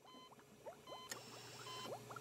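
Faint ambient background music bed: soft short beeping tones repeating about every three-quarters of a second, with small rising blips and a low hum coming in about halfway.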